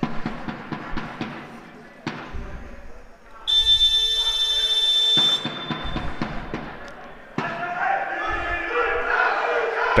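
Sports-hall buzzer sounding once, a steady high tone lasting about two seconds, during the time-out. Several seconds later a team huddle shouts together, many voices at once.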